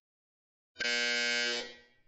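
Workout interval timer's end-of-round buzzer: one buzzing electronic tone about a second long, starting a little under a second in and tailing off. It signals the end of a 30-second work interval.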